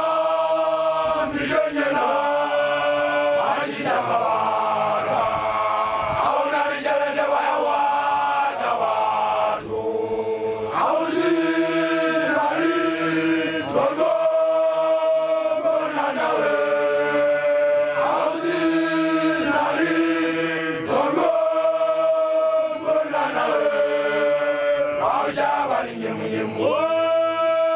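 Group of young Basotho men, makoloane (newly graduated initiates), chanting together unaccompanied, in held notes that move in short phrases of a second or two.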